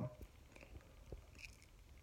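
Near silence: faint room tone with a few soft clicks.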